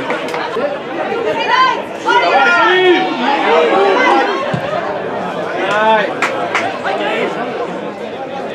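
Several voices of football players and spectators shouting and calling over one another during play, loudest about two to three seconds in and again near six seconds. A couple of sharp knocks come just after six seconds.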